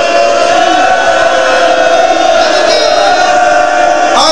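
Loud chanting through a public-address system: one voice holds a long, steady note, with crowd voices under it.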